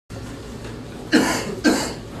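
A person coughing twice, about half a second apart, over a steady low room hum.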